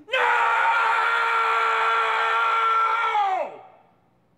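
A man's long, drawn-out scream held at a steady high pitch for about three and a half seconds, falling away at the end.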